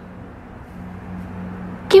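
A steady low hum under faint background noise, with no distinct events.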